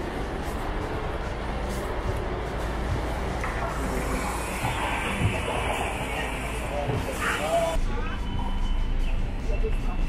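Parked tour coach idling, a steady low engine hum, with faint voices of people boarding.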